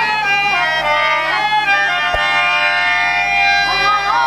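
Bengali hari-nam kirtan music: a harmonium holding steady reed chords under a melody that glides up and down between notes, carried by a bamboo flute and women's voices.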